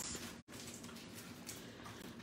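Faint rustling of clear plastic stamp and die packages being shuffled on a table. The audio drops out for a moment about half a second in.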